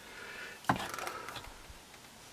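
A single knock of a wooden board against a workbench about two-thirds of a second in, followed by a few faint small clicks as the board is handled.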